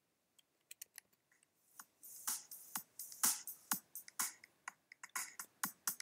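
A soloed electronic drum beat playing back in a DAW, fading in as its volume automation ramps up. A few faint hits come in the first couple of seconds, then repeated drum hits grow louder.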